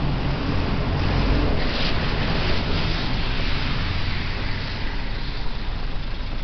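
City street traffic noise: a steady, low rumble of passing vehicles.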